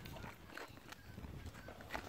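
Faint footsteps on open ground with scattered soft knocks and rustle from handling a phone.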